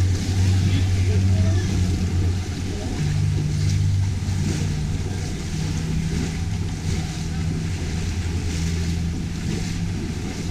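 A boat engine running with a steady low drone, its pitch stepping up a little about three seconds in.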